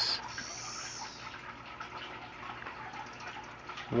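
Periodical cicada (13-year Magicicada tredecassini) giving a short high-pitched buzz lasting about a second near the start, then a steady faint hiss.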